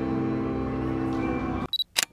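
Ambient organ-like background music with held chords that cuts off suddenly about one and a half seconds in, followed by a short high beep and a camera shutter click, as of a camera taking a picture.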